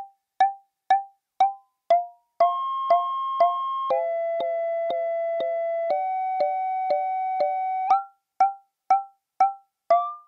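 Resonant bandpass filters of a CUNSA quad filter being rung by triggers, giving about two short, pitched percussive pings a second. The pitch of the pings shifts as the filter frequencies are retuned. From about two and a half seconds in until about eight seconds, a steady chord of several tones is held under the pings, changing pitch twice.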